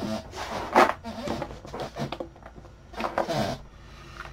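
A man muttering quietly to himself between takes, mixed with the handling noise of a cardboard board-game box being picked up and held.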